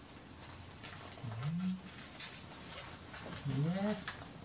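Crinkling and rustling of a disposable diaper being handled and fastened onto a baby monkey. Two short, low-pitched vocal sounds, each rising in pitch, come about a second in and near the end.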